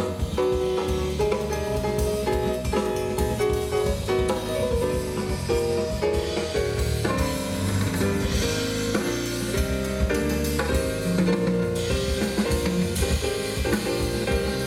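Live jazz band playing: a stepped melody line over piano, guitar and a drum kit keeping time.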